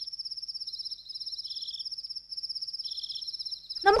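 Crickets chirping in a fast, steady high trill that breaks off briefly twice. A second, lower insect trill comes in short spells three times. A child's voice starts right at the end.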